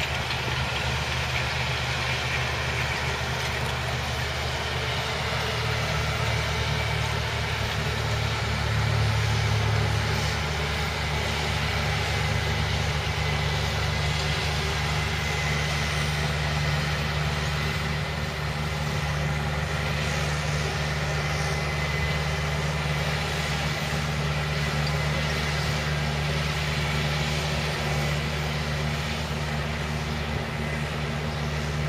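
Case IH tractor's diesel engine running steadily under load while pulling a rotary harrow through dry soil, a little louder about nine seconds in.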